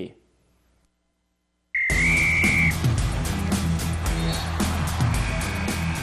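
Near silence for about a second and a half, then a TV sports theme starts suddenly, opening with a whistle blast of about a second and running on as music with a fast steady beat.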